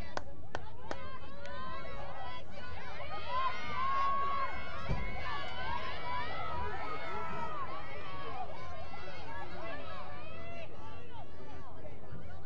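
Many voices overlapping, players calling out to one another and spectators chattering, at a steady level. A few sharp clicks come in the first second, and a short low thump about five seconds in.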